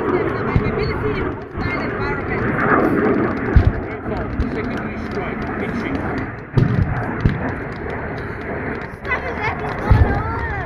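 Pyrotechnic battle-simulation explosions going off in a mock ground attack: a few heavy bangs, the loudest about three and a half seconds in, with more near the end, over a steady wash of nearby crowd voices.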